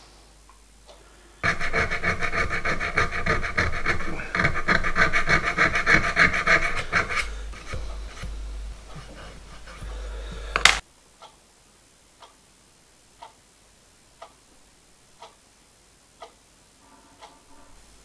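A thin steel hand tool scraping and rasping against the silver-soldered speedometer drive gear held in a vise: a loud, ringing scrape lasting about six seconds, fading away and ending in a sharp click. Then faint ticking, about once a second, like a wall clock.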